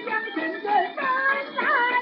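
Beijing opera music from an old record transfer: a melody that slides and wavers in pitch, sung with fiddle-type string accompaniment. The sound is thin and narrow, with no deep bass and no high treble.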